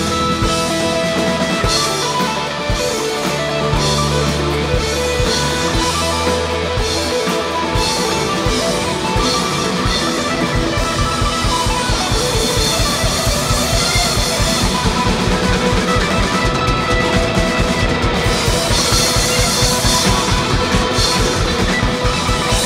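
Indie rock band playing live, an instrumental passage with electric guitar and held bass notes. About eight seconds in, the drum kit comes in with a fast, driving beat that carries on.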